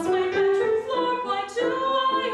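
A woman singing solo in an operatic style, moving between held notes, with a long sustained note beginning about a second and a half in.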